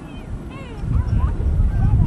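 Wind rumbling on the microphone, with several short high-pitched calls that swoop up and down in pitch.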